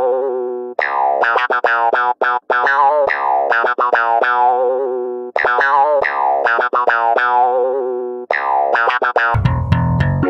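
A clarinet sample loop plays a short phrase of quick staccato notes ending in a held, wavering note that fades out; the phrase repeats several times. Near the end a deeper, bass-heavy sample cuts in.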